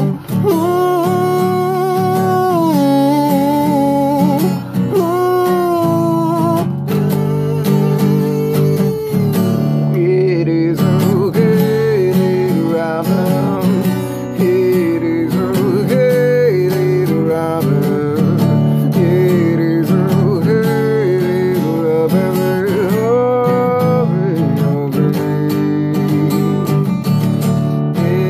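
Acoustic guitar strummed steadily, with a harmonica playing the melody over it for the first several seconds; later a voice carries the melody over the guitar.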